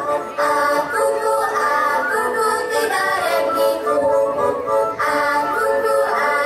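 A group of women singing a Slovak folk song together, amplified through the stage sound system, with short breaks between phrases just after the start and about five seconds in.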